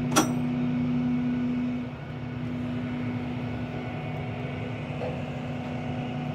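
A steady low mechanical hum, with a single sharp click just after the start and a brief drop in level about two seconds in.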